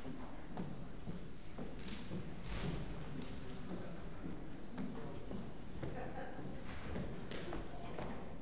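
Quiet room tone of a large hall with faint murmur and rustling from an audience, dotted with scattered light knocks and thumps.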